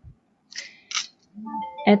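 A person's voice: two short soft hisses in the first second, then speech starts in the second half.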